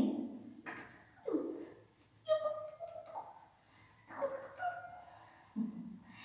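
A spaniel whining and whimpering in a string of short, high calls about a second apart, some sliding down in pitch and some held, the affectionate whine of a dog seeking attention while being petted.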